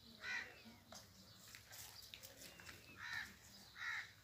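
Three short animal calls: one just after the start and two close together near the end, with faint bird chirps in between.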